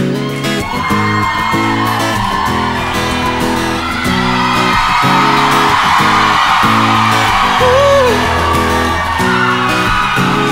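Live acoustic band playing a song intro: strummed acoustic guitar chords in a steady rhythm over upright double bass, with the audience cheering and whooping over the music.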